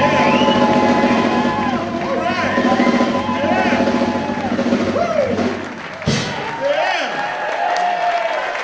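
Live electric blues band holding its closing chord, with the crowd cheering and shouting over it. About six seconds in the sound cuts abruptly to crowd voices and cheering.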